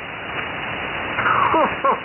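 Steady hiss of band noise from an amateur-radio receiver on the 75-metre band, its sound cut off above about 3 kHz. About a second in comes a short rushing burst, then a man's deep "ho, ho" through the radio near the end.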